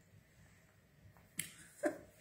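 Two short, sharp clicks about half a second apart, the second the louder, over quiet room tone.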